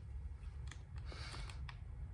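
A few small plastic clicks and a short scraping rustle as the cap of a plastic fuel-treatment bottle is opened, over a low steady hum.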